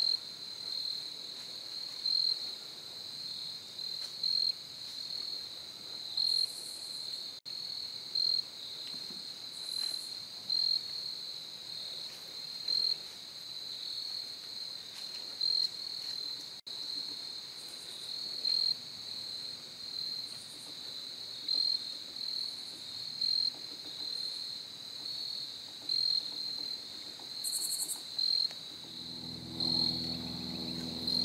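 Crickets chirping in a steady high trill, with louder chirps recurring every second or two.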